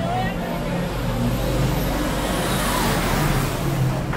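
Diesel engine of a Magirus aerial-ladder fire engine on a Mercedes-Benz chassis, driving past at close range with a steady low drone that grows a little louder near the end.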